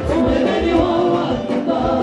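A group of singers singing together in harmony, amplified through microphones, with the band's bass and drums low beneath the voices.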